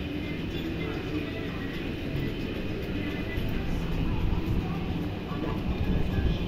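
Low, buffeting rumble of wind on the microphone, with faint music and voices in the background.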